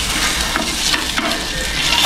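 Sliced sausage and a boiled egg sizzling as they fry in a frying pan, with a spoon stirring and scraping among them now and then.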